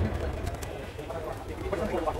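Steady low background hum, with faint, indistinct voice-like calls over it.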